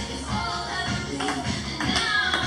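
Background music playing, with a few sharp taps of a table tennis ball striking paddle and table during a rally.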